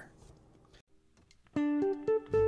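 Near silence, then about one and a half seconds in a guitar sounds a few plucked notes that ring on.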